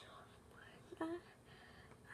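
Low, breathy whispering from a girl, with one short voiced vocal sound about a second in.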